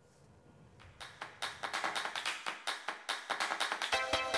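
A rapid run of sharp claps, starting about a second in and growing louder.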